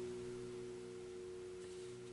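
Faint background music: a soft, steady chord of several held tones.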